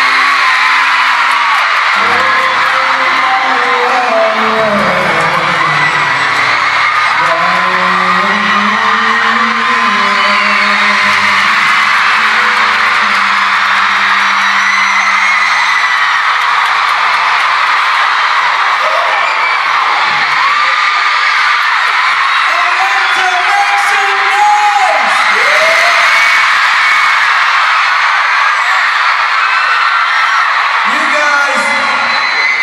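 Loud, steady screaming and cheering from a packed arena concert crowd over live pop music. The music's held low notes fade out about halfway through, leaving mostly screaming.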